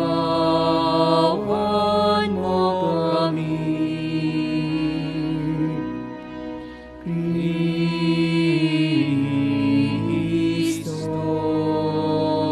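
Sung church music during Mass: a voice holding long, wavering notes over a steady sustained accompaniment, in two phrases with a short break about seven seconds in.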